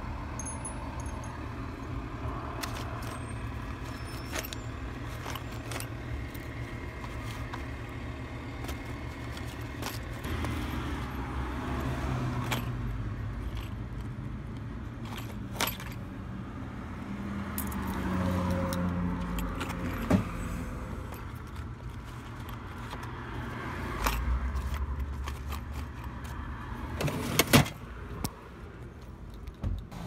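Metal lock hardware and packaging rattling and clinking as a tool chest drawer of lock parts is rummaged through, with scattered sharp knocks, over a steady low rumble.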